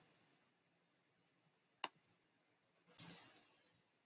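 Near silence broken by a single sharp click a little under two seconds in, as the presentation slide is advanced, then a brief soft noise about three seconds in.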